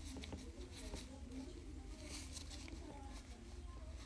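Faint soft rubbing of a lint-free wipe on a fingernail, degreasing it after filing and buffing, over a low steady hum.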